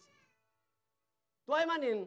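A man preaching: his voice trails off, there is about a second of dead silence, then he comes back in loudly with a drawn-out word sliding down in pitch.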